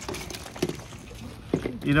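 Shredded plastic and chopped cord pieces rustling and clicking faintly as hands spread them over a plastic table, over a low steady rumble.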